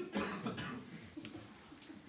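A man clears his throat with a short, rough cough right at the start, followed by faint room noise.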